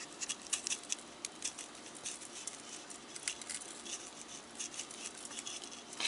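Salt-free garlic and herb seasoning being shaken from its shaker over sliced conch in a steel bowl: a faint, irregular patter of small ticks.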